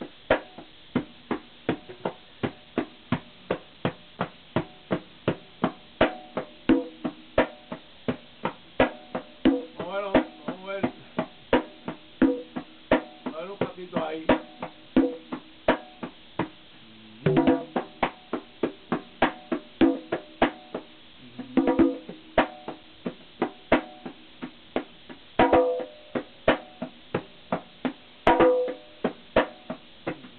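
Conga drums played by hand: a steady pulse of sharp slaps, about three a second, mixed with ringing open tones, with quick rolls across the drums several times in the second half.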